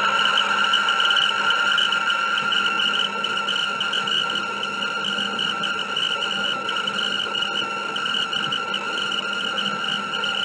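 Motor of a car-shaped VHS tape rewinder running as it rewinds a tape: a steady high whine with a slight warble.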